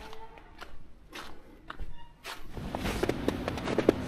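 Footsteps on snow, a few soft steps at first, then steadier ones. About halfway through, the steady rush of running stream water comes up under them.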